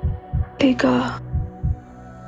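Heartbeat sound effect from a film soundtrack: two double thumps, lub-dub, about a second and a half apart, over a low steady drone. A short spoken word from the narration falls between them.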